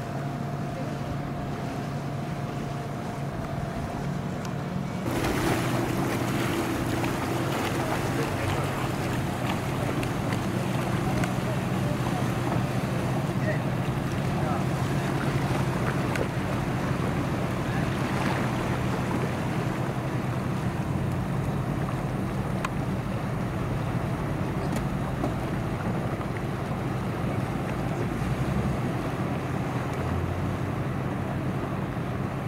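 Outboard motors running as boats pass slowly through a channel. First a single Yamaha outboard on a small center-console hums steadily. About five seconds in the sound changes suddenly: twin Yamaha 150 outboards on an Edgewater 245CC run under loud wind noise on the microphone and water sounds.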